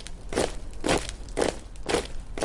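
Marching footsteps sound effect: even, crunching steps of a body of soldiers, about two a second, over a low rumble.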